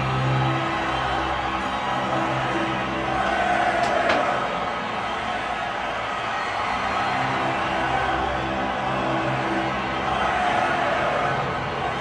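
Backing music with long held notes, playing steadily; a single brief click about four seconds in.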